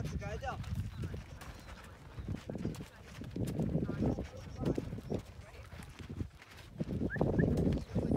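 A string of dromedary camels walking with riders on a stony desert track, their footfalls knocking steadily, with indistinct chatter from the riders.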